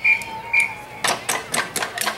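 Scattered hand claps from the stadium crowd as the applause dies away, a few separate claps a second from about a second in. Two short high chirps come first.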